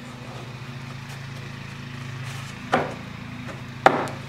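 Two sharp wooden knocks about a second apart near the end, as a thin scrap-wood shim is tapped into a homemade circular-saw jig to wedge the strip and give it clamping pressure. A steady low hum sits under it.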